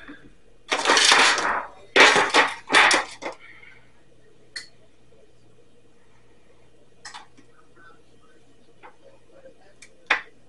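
Clear plastic food tub being handled: three loud bursts of scraping, knocking handling noise in the first few seconds, then a few light clicks.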